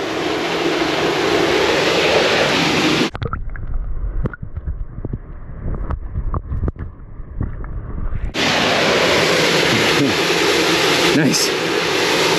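Wind and water hiss on a handheld action camera's microphone. About three seconds in it cuts to the muffled sound of the camera held underwater: a low rumble with small clicks and knocks from hand and camera handling. About five seconds later the camera comes back out of the water and the hiss returns.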